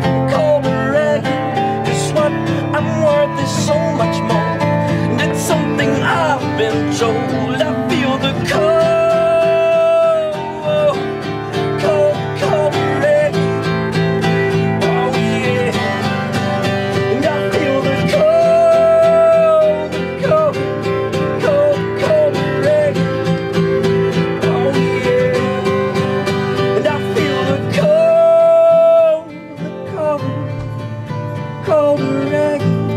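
A band playing a song live on acoustic guitars, with long held melody notes that come back about every nine seconds.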